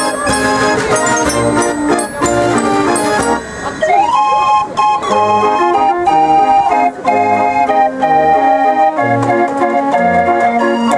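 Dutch-style street organ (the Jubileumorgel), a mechanical pipe organ, playing a tune: pipe melody over a bass note about once a second, with a brief drop in the music shortly before the middle.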